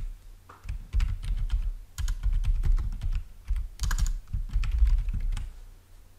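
Typing on a computer keyboard: irregular clusters of key presses with dull low thuds, stopping near the end.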